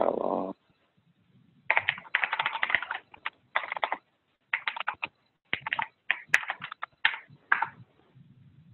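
Typing on a computer keyboard: quick runs of keystrokes with short pauses between them as a search query is entered. A brief low sound comes right at the start.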